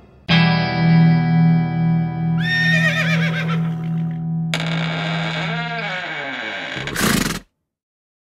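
A dramatic music sting: a held, distorted electric-guitar chord starting suddenly, with a horse whinnying over it. A short loud burst comes near the end, and then the sound cuts off abruptly.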